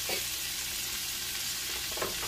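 Striped bass fillets sizzling steadily in bubbling melted butter in a cast-iron skillet over low heat.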